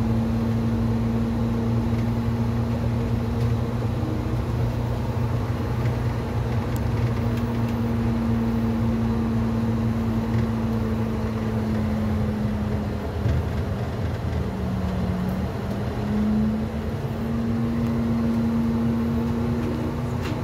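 Transit bus engine and drivetrain running under way, heard from inside the bus, with a steady whine over the engine's rumble. About two-thirds of the way through, the whine drops in pitch and eases briefly, then climbs back to its earlier pitch.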